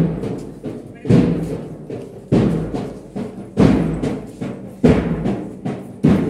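A deep drum beating a slow, steady marching rhythm: one stroke about every one and a quarter seconds, five in all, each ringing out and fading before the next.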